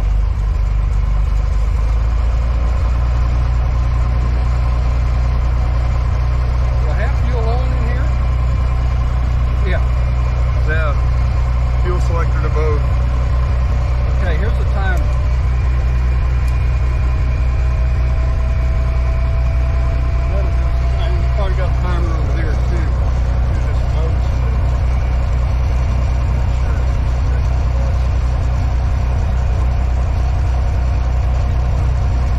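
Cessna 175's piston engine and propeller running steadily during a ground run, heard from inside the cabin as a loud, even drone. The run is to circulate leak-detector dye through the oil so the leaks show up.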